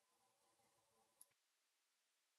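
Near silence: faint room tone with one small click about a second in.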